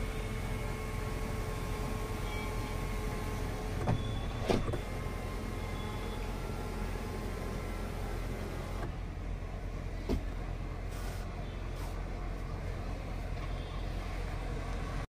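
Toyota Innova HyCross power sunroof motor running steadily as the roof closes, then stopping about nine seconds in, with a few clicks along the way.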